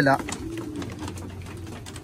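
Domestic racing pigeons cooing low and steadily inside their loft, with a few faint clicks.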